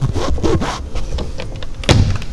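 Hinged wooden overhead cabinet door being handled and pushed shut: scraping and a few knocks, with a sharp thunk just before the end as it closes.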